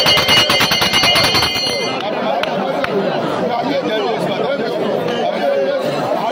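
A rapid, pulsing electric-bell-like ringing with a fast clicking beat stops about two seconds in. Many voices talking or praying aloud at once follow.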